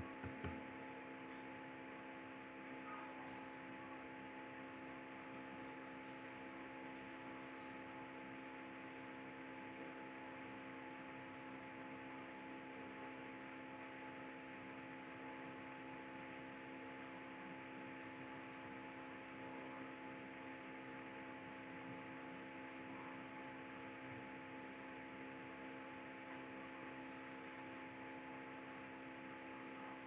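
Faint, steady electrical hum made of several fixed tones over a low hiss, with nothing else happening.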